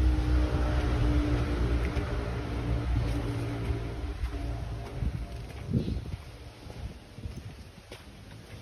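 A motor vehicle's engine running close by, a low rumble with a steady hum that fades away about five seconds in.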